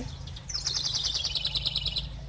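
A songbird sings one rapid trill of quick repeated notes, starting about half a second in and lasting about a second and a half, its pitch slowly falling.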